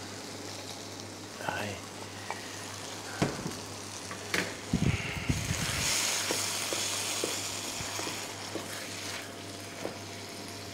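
Vegetable sauce sizzling in a frying pan on a gas burner as crushed garlic, parsley and a little broth are added, after a few clinks and knocks of utensils. The sizzle swells about five seconds in and dies down near the end.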